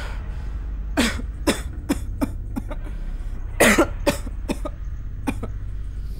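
A man coughing and gasping in a string of short, uneven bursts, clutching his throat, over a steady low hum.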